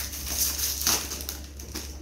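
Plastic packet of dried pasta crinkling as it is handled and opened, with a louder sharp crackle about a second in.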